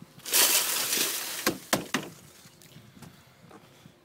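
Rust scale and dirt from car rocker panels poured off a plastic dustpan into a plastic wheelie bin, a grainy rattling pour for about a second, followed by three sharp knocks.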